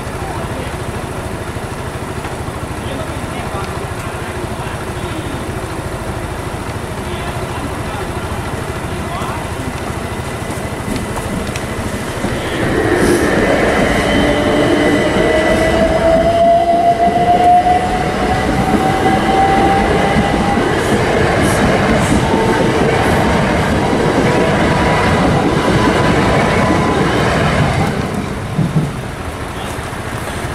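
Electric multiple-unit train running over a level crossing, starting about twelve seconds in and passing for about fifteen seconds with rail and wheel noise and a motor whine that slowly rises in pitch. Before the train, the steady background of traffic waiting at the barriers.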